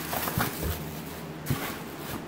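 Clear plastic packaging bag crinkling and rustling as it is pulled out of a cardboard shipping box, with a few soft knocks.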